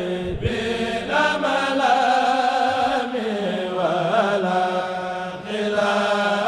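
A kurel, a group of young men, chanting a Mouride khassida a cappella into microphones. Long ornamented held notes waver over a steady low note held beneath them, with a short breath break about half a second in and another near the end.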